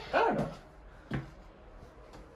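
A dog barking once, loud and short, followed by a single weaker, shorter yip about a second later.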